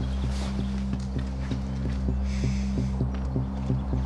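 Tense drama score: a sustained low drone under a quick, ticking pulse of about four to five clicks a second.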